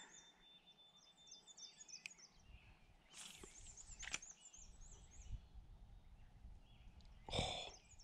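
A bird singing a quick series of repeated high chirping notes over a quiet outdoor background, with a few faint clicks in between.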